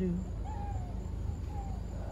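A voice ends a word at the start, then a steady low rumble of outdoor background with two faint, short falling calls in the distance.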